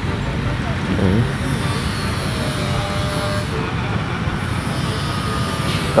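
Steady roadside street noise: a low traffic rumble with faint voices in the background.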